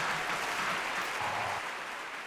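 Audience applauding, slowly fading.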